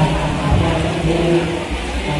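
Crowd hubbub: many voices talking at once, with a steady low drone running under it.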